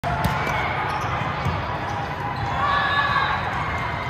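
Volleyballs being struck and bouncing, a few sharp smacks over a steady hubbub of voices, echoing in a large hall.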